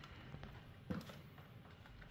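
Quiet room tone with one soft, short tap about a second in.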